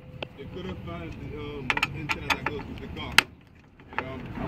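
Sharp metallic clicks and taps of screws being worked out of and handled on a car radio's steel mounting bracket. There are several quick clicks in the middle and one louder click just past three seconds, with a faint voice in the background.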